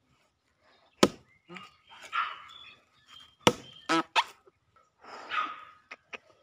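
A small hatchet chopping into a rotten, fibrous coconut palm trunk: two sharp blows about two and a half seconds apart, with rougher scraping noise of the soft wood and fibres between and after them.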